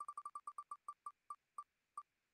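Wheelofnames.com spinning-wheel tick sound effect: faint, short pitched ticks that slow steadily as the wheel coasts toward a stop, the gaps widening until the last ticks come nearly half a second apart.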